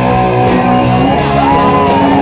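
Live rock band playing loud, led by a Les Paul-style electric guitar with bent, sustained notes; one note bends up and holds about a second and a half in.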